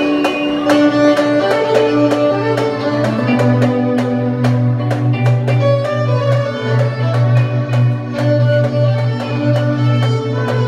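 Violin played with a bow, carrying a melody of held and moving notes over accompaniment with a steady beat and a sustained bass line.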